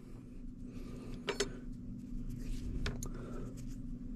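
Faint handling of a small sheet-metal terminal plate being set down on a cloth-covered table: a couple of light clicks, about a second in and again near three seconds, over a steady low hum.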